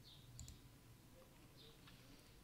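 Near silence, with a faint computer mouse click about half a second in.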